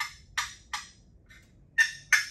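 Wooden turkey box call worked to cluck: a string of short, sharp notes about three a second, each fading quickly. There is a pause with one faint note about halfway, and the clucking starts again near the end.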